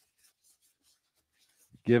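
Faint rustling of gloved hands rubbed together, wet with sterile alcohol and being wiped down to dry. A man's voice starts near the end.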